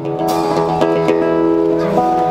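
Acoustic guitars playing the opening chords of a song, a few strums with the chords ringing on between them.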